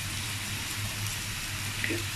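Steady sizzling hiss of clams and sauce frying in an aluminium wok, with a low steady hum underneath.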